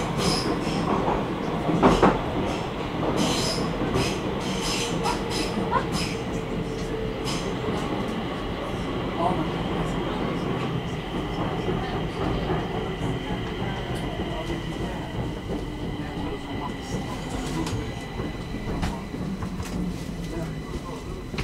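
Stockholm metro (tunnelbana) train running through a tunnel, heard from inside the car by the doors. A steady rumble carries repeated clicks of the wheels over the rails during the first several seconds and a faint steady high whine, easing a little towards the end.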